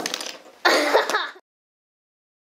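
A sharp click, then a short breathy vocal burst from a child, like a cough or throat clearing, about half a second in; everything cuts off suddenly after about a second and a half.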